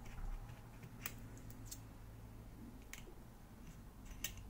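Faint clicks and light scraping of a steel feeler gauge being slid in and out of the gap at a carburettor's throttle butterfly, with two sharper clicks about a second in and just before the three-second mark. The gauge's drag is being felt to match this butterfly gap to the neighbouring carb's.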